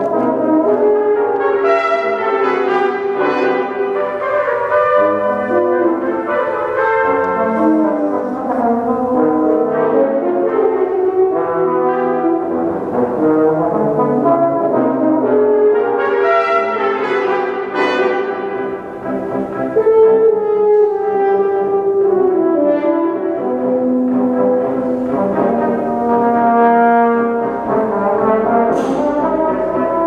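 Brass quintet of two trumpets, French horn and two trombones playing together, with many short notes moving in several parts at once and a brief dip in loudness a little past the middle.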